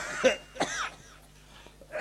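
A man's short laugh: three quick bursts in the first second, then a pause.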